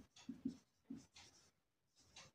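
Faint squeaks of a marker writing on a whiteboard: a few short strokes in the first second.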